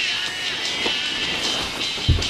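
Music playing, with a steady high held tone running through it.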